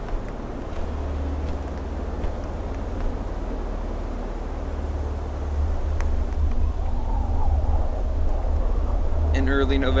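Snowstorm wind blowing as a steady low rumble, growing louder about halfway through.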